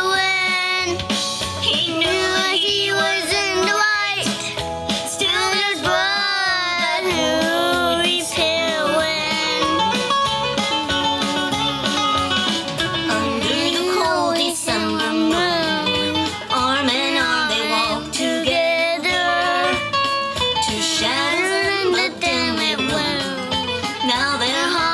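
A four-year-old boy singing a song into a microphone, with instrumental accompaniment underneath.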